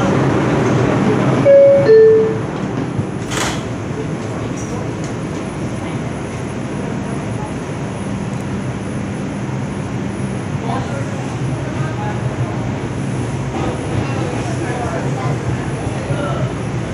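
The two-note descending door chime of an R142 New York City subway car, signalling that the doors are closing, followed about a second later by a sharp knock as the doors shut. The car then runs with a steady rumble and low motor hum.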